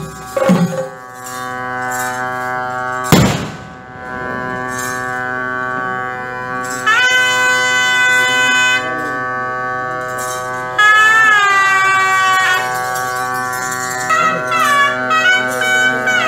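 Ritual temple wind music: nadaswaram-type double-reed pipes hold a steady drone, and a bending, ornamented melody enters over it about seven seconds in, again around eleven seconds and near the end. A few drum beats sound at the start, and a single loud strike comes about three seconds in.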